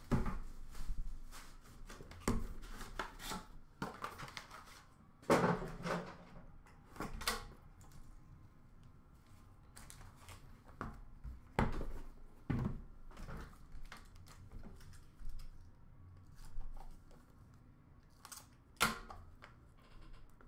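Hands handling and opening cardboard trading-card boxes: a dozen or so scattered knocks, taps and cardboard scrapes, with quiet gaps between.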